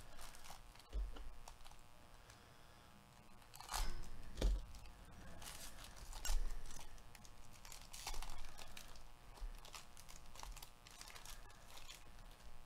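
Foil trading-card pack wrapper crinkling and tearing as it is pulled open by hand, in irregular crackling bursts with the loudest a few seconds in.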